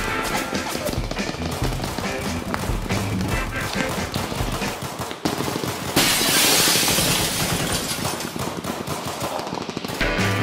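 Film trailer soundtrack: music under rapid machine-gun fire sound effects, with a sudden loud burst of noise about six seconds in.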